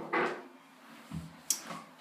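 Household handling noises while a spill is wiped up: a brief rustle at the start, a soft thump about a second in, and a sharp click half a second later.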